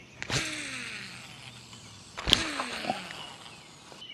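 Two casts with a fishing rod and reel: each starts with a sharp snap and is followed by the reel's spool whirring, falling in pitch over about a second as it slows. The second cast is the louder.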